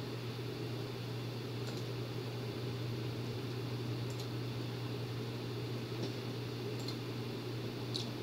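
Room tone: a steady low hum with a faint hiss, and a few faint clicks.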